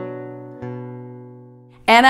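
Acoustic guitar strummed slowly, the same chord struck twice, the last time about half a second in, then left ringing and fading away. A woman's voice starts right at the end.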